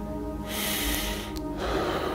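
Soft sustained background music, with a man's sharp sniffing breath through the nose about half a second in as he weeps, and another breath near the end.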